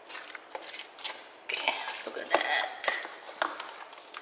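Silicone spatula stirring and folding creamy fruit cocktail in a plastic tub: wet squelching with irregular light clicks and knocks of the spatula against the plastic.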